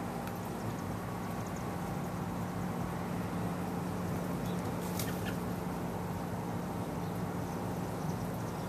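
Steady low background hum with an even outdoor haze, and a couple of faint clicks about five seconds in.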